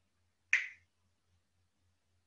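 A single sharp finger snap about half a second in, brief and bright, with a short room echo.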